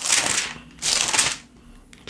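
Bible pages being flipped: two papery rustles, the second a little under a second after the first.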